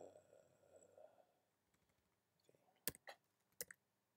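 Near silence with a handful of sharp clicks from computer keys in the second half, as a typed answer is edited.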